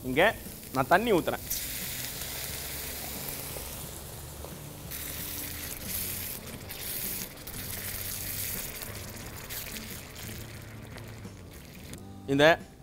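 Pieces of ivy gourd sizzling and frying in hot oil in a steel kadai, giving off steam. The sizzle comes on strongly about a second and a half in and carries on more evenly after that.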